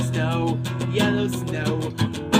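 Steel-string acoustic guitar strummed in chords, with a man singing a line over it.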